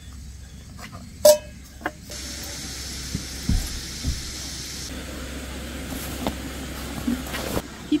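Water poured from a plastic bottle into a metal camping kettle: a steady stream splashing for several seconds, with a couple of low knocks as the bottle and kettle are handled. It is preceded by a single sharp click about a second in.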